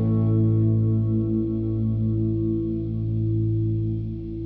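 Rock music with no vocals: an electric guitar chord through chorus and distortion effects, held and ringing on with a slow wavering, its high end dying away.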